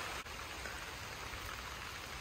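Rain falling steadily, with one faint click about a quarter second in.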